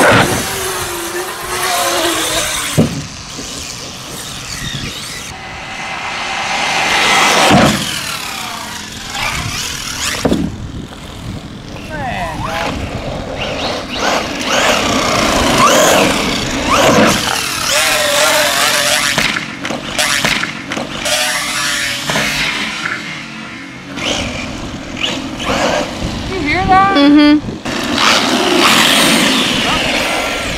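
1/10-scale electric RC short-course truck, a Traxxas Ford Raptor R running without its body, driven hard on asphalt: the motor whine rises and falls with the throttle, over tyre noise and a few sharp knocks from landings and hits.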